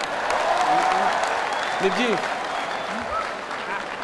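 Audience applauding, loudest in the first two seconds and tapering off toward the end, with a few voices calling out over it.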